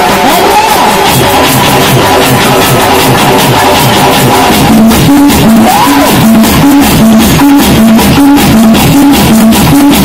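Loud Telugu dance song playing over a PA sound system, with drums. A heavier, regular beat with repeated low notes takes over about five seconds in.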